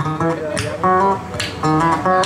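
Acoustic guitar strumming chords in an instrumental break between sung lines, with a fresh stroke every half second or so.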